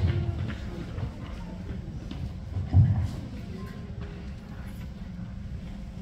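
Low background noise of a crowded hall with faint voices, and a single dull thump about three seconds in.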